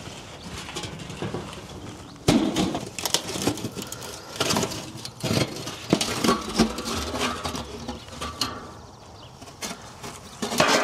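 Steel drums of a barrel-in-barrel biochar retort clanking and scraping as the inner barrel is lifted out of the outer drum and set down, and its metal tray is lifted off. The irregular run of sharp metal knocks starts about two seconds in, after a steady background.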